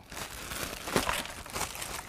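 Plastic bag crinkling and rustling as processed cotton is pulled out of it by hand, with a sharper crackle about a second in.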